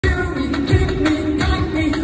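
Loud live eurodance music over a concert PA, heard from the crowd, with singing and a deep kick drum about every three-quarters of a second.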